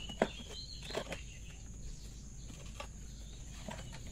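Knocks of a wooden concrete-block mould being handled and set down on dirt: one sharp knock about a quarter second in, a softer one about a second in, and a few faint ticks later. Faint bird chirps and a steady high insect drone run underneath.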